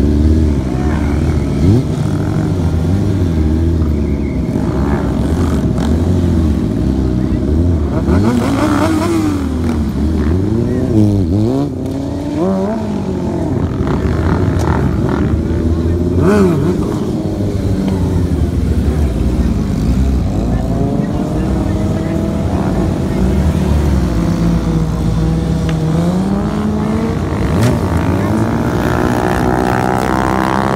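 Sport motorcycle engines revving, their pitch rising and falling over and over, with a fast climb in revs near the end.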